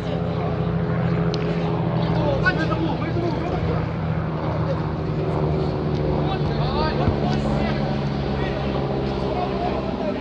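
A steady, low engine-like drone made of several pitched tones, shifting slightly in pitch about halfway, with players' shouts over it.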